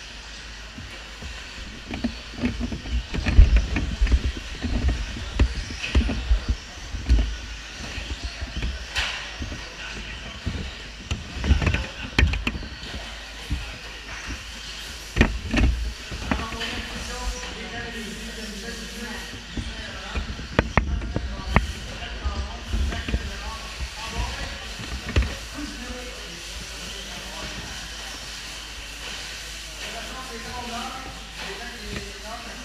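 Radio-controlled stadium trucks running on an indoor track, with irregular knocks and thumps as they hit the tubing borders and land, over a steady background hiss. Voices echo in the hall behind.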